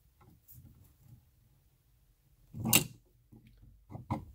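Steel adjustable wrenches handled on a brass acetylene regulator fitting as the nut is snugged onto the tank: faint scraping and handling noises, with one short louder clack about three seconds in.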